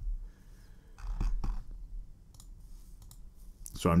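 A computer mouse clicking a few times, the clicks spaced apart.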